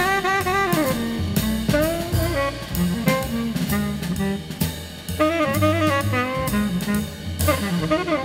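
Instrumental break of a jazz vocal record: a wind-instrument solo melody with vibrato over drum kit and bass.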